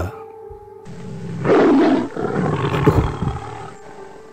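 A tiger's roar, one long roar that begins about a second in, peaks a moment later and trails off over the next two seconds.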